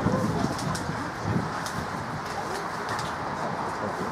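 Open-air ambience with a pigeon cooing in soft low hoots over a steady background hiss, with faint short high chirps.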